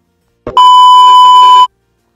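A single loud electronic beep, one steady high tone lasting about a second, starting about half a second in with a short thump and cutting off sharply.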